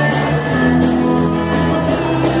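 Rock and roll band playing, with guitar and drum kit.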